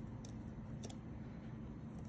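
Low steady hum with two faint short clicks, about a quarter second and just under a second in.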